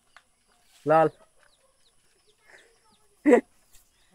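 A chicken clucks once, briefly, about three seconds in, with faint chirping of small birds in the background.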